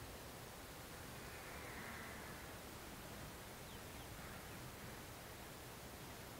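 Faint outdoor background noise: a steady low hiss with no clear sound standing out.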